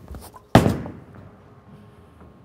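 Ebonite GB4 Hybrid bowling ball released onto the lane: a few light knocks, then one sharp thud about half a second in as the ball lands. A fading rolling sound follows as it runs down the lane.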